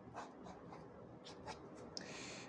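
Graphite pencil drawing on paper: a few short, faint strokes of the lead scratching across the sheet as the sketch lines are laid down.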